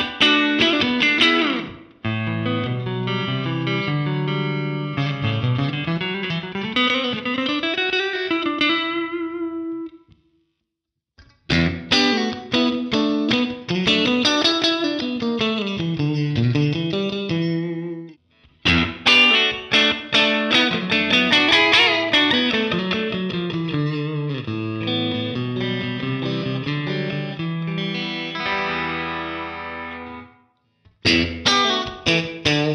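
G&L Tribute Legacy electric guitar, with three single-coil pickups, played through a Fender combo amp: strummed chords and a melody with bent, gliding notes. It comes in three passages, broken by short pauses about ten and eighteen seconds in.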